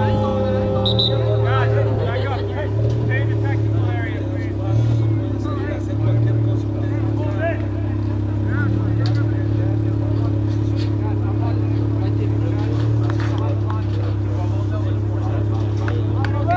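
Indistinct voices of players and onlookers calling and chatting, over a steady low hum.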